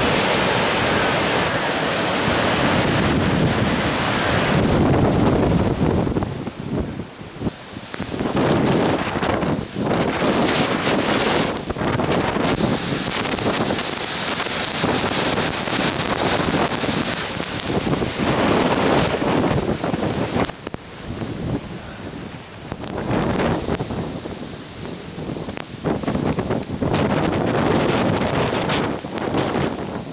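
Hurricane-force wind gusting through trees, with wind-driven rain and heavy wind buffeting on the microphone. The noise rises and falls in gusts, with several brief lulls.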